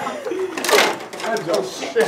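Indistinct voices of a group of young men talking and exclaiming, with a brief burst of noise a little over half a second in.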